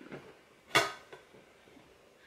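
A metal tea tin clinks once, briefly and sharply, as it is handled, about three-quarters of a second in; otherwise near-quiet room tone.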